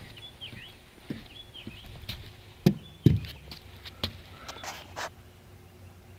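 A few scattered knocks and thuds on a wooden trailer deck as a spirit level is handled and set down, the loudest two close together about three seconds in. Faint bird chirps in the first two seconds.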